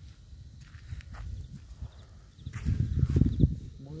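Footsteps crunching on dry leaves and earth, a few separate steps, over a low rumble on the microphone that swells loudest about three seconds in.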